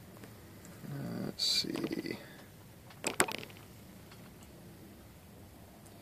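A mostly quiet room, with a brief low murmur from a man's voice between about one and two seconds in and a short burst of clicking from the hard plastic 3D print being handled about three seconds in.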